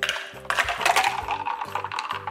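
A thick coffee protein drink poured from a plastic BlenderBottle shaker into a plastic tumbler, splashing, with sharp clinks as the pour begins and again about half a second in, and small clinks running on through the pour.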